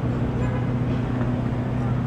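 Steady low engine hum from a large idling vehicle, with street traffic noise around it.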